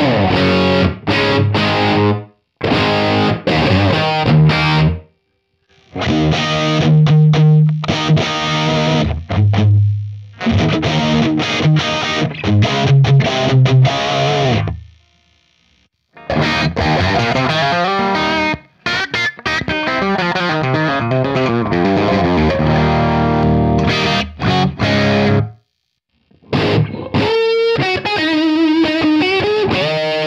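Distorted electric guitar played through the Universal Audio Lion '68 amp plugin, a model of a Marshall Super Lead: overdriven rock riffs and chords in several stretches, broken by a few short silences. Near the end it turns to a few held single lead notes.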